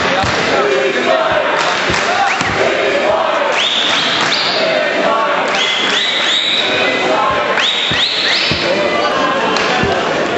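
Shouting voices in a large hall around a karate kumite bout, with repeated short thuds of feet and strikes on the mat. Several shrill rising cries come between about four and nine seconds in.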